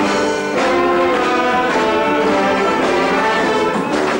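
Brass band playing carnival music: held brass chords with trombones and trumpets, with a short break about half a second in.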